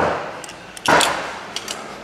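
Two sharp metal knocks a little under a second apart, each with a short ring, as the parted drive shaft and pulleys of a friction-driven overhead conveyor are handled.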